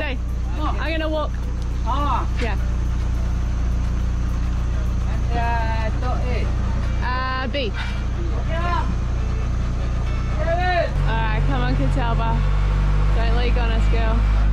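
Boat travel lift's diesel engine running steadily, then revving up about eleven seconds in, with men's voices talking over it.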